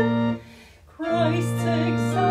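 Hymn sung to organ accompaniment: a voice with wide vibrato and the organ hold a final note, cut off together, and after a brief near-silent break both start the next stanza about a second in.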